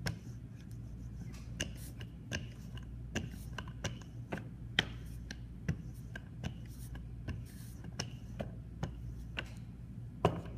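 Wooden rolling pin rolled back and forth over a clay slab and wooden guide strips, giving irregular clicks and knocks about once or twice a second, one louder about halfway through, over a steady low hum.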